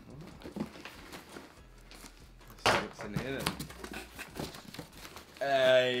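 A cardboard box being cut open along its packing tape with a box cutter and its flaps pulled back, with many small scrapes and crackles and crinkling of the plastic packaging inside. A man's voice breaks in briefly halfway through and again near the end.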